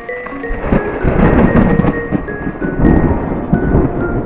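Outro music, a melody of short held notes, over a long rolling rumble of thunder that swells from about half a second in.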